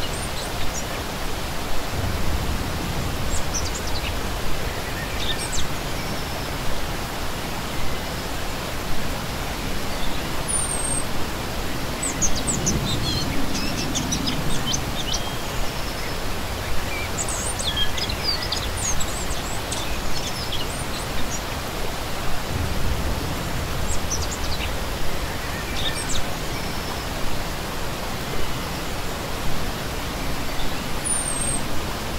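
Small rocky forest stream rushing and splashing steadily over stones, with songbirds chirping in short, high runs of quick notes that come at intervals and are busiest around the middle.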